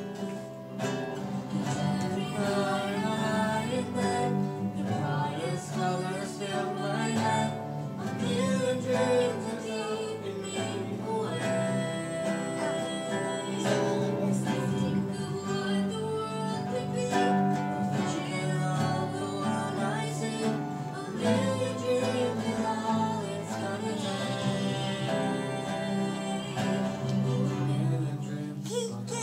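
Nylon-string classical guitar played continuously, a steady flow of plucked notes and chords.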